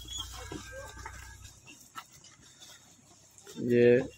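Faint animal sounds from water buffaloes walking close by, fresh out of their bathing tank, with a low hum in the first second or so. A man's voice says a word near the end.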